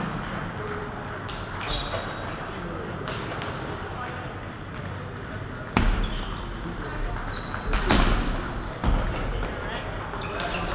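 Table tennis ball bounced before the serve, then rallied. There are a few light ticks at first, then a run of sharp clicks off paddle and table for about three seconds, with short high squeaks of shoes on the court floor.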